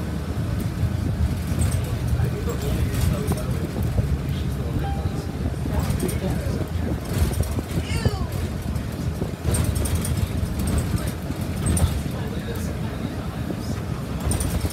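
Inside a moving city transit bus: the steady low rumble of the engine and drivetrain with road noise, and scattered rattles and clicks from the cabin.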